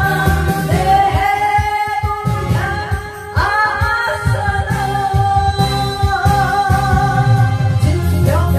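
A woman singing a melody with long, wavering held notes into a microphone, over loud backing music with a steady beat. There is a brief drop in the music about three seconds in.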